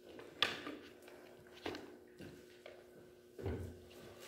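A few faint knocks and clacks of things being handled at a wooden pulpit, with a louder, deeper thump near the end as the pulpit is left. A faint steady room hum sits underneath.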